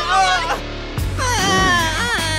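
Cartoon character voices crying out in wavering, sliding pitch over background music.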